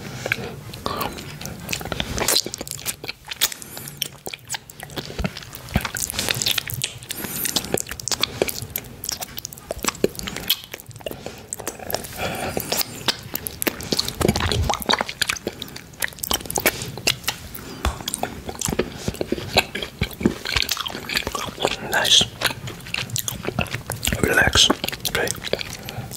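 Biting and chewing a key-shaped chocolate, heard as a dense run of short clicks and snaps mixed with wet mouth sounds.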